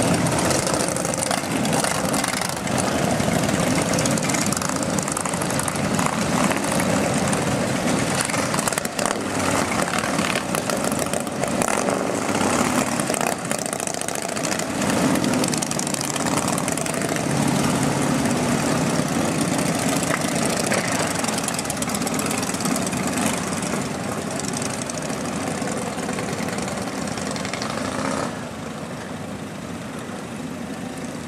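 Many Harley-Davidson V-twin motorcycle engines running together as a group of bikes pulls away one after another. The sound is loud and continuous and grows quieter near the end as the last bikes ride off.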